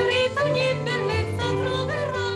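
A woman singing held notes with violins accompanying her.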